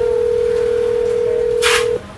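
A steady electronic telephone-style tone at one mid pitch, held for about two seconds and then cut off sharply. A short burst of hiss comes just before it stops.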